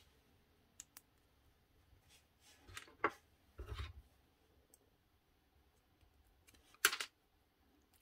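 Light clicks and taps of thin laser-cut plywood pieces being handled and fitted together, a handful of scattered short clicks with the sharpest near the end.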